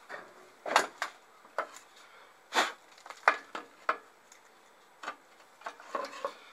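Irregular knocks and clinks of metal and wood being handled at a drill press, about eight separate hits with quiet gaps between them; no motor is running.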